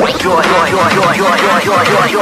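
Electronic dance music track: the heavy deep bass cuts out at the start, leaving a fast, repeating line of short pitched notes, a chopped vocal or lead riff.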